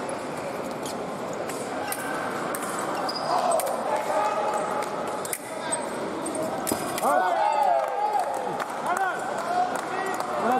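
Foil fencing bout in a large hall: footwork on the piste and light blade clicks over background voices, with a cluster of high squeaks sliding in pitch about seven seconds in.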